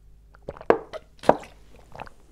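Someone drinking water from a plastic bottle: a few short gulps, two of them loud, about a second in and half a second later.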